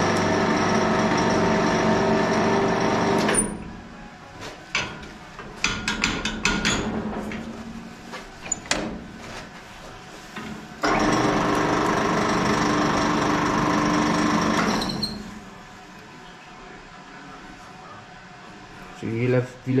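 Motor drive of a home-built flat-bar twisting attachment running steadily for about three and a half seconds as it twists a steel flat bar through 90 degrees. A few seconds of metal clicks and knocks follow. The drive then runs again for about four seconds, the return stroke.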